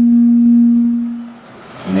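A steady held tone with overtones, fading out about a second and a half in, with faint clicks running through it.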